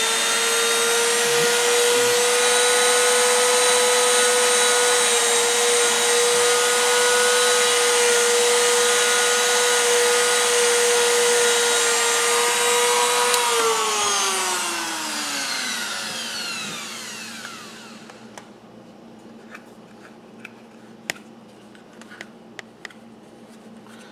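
A rotary tool with a felt polishing wheel runs at high speed with a steady, high-pitched whine while buffing the edge of a Kydex holster. About thirteen seconds in it is switched off, and the whine falls in pitch and fades as the tool spins down, followed by a few faint clicks of handling.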